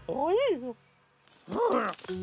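A cartoon character's wordless vocal cry that rises and falls in pitch, followed after a short silence by another brief vocal sound near the end.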